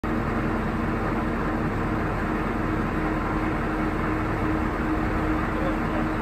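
Mobile crane's diesel engine running at a steady speed as it lifts a boat, a constant low drone with no change in pitch.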